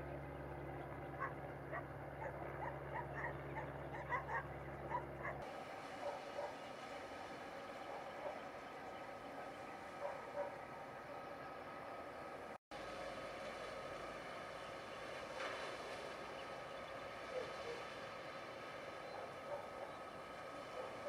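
A dog yelping and barking in short repeated calls over a steady low engine hum for the first five seconds or so. After that the hum stops, leaving a steady wash of noise with a few scattered calls.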